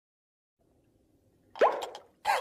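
A single hollow mouth pop, made with a finger or hand at the lips, about one and a half seconds in; its pitch sweeps quickly upward.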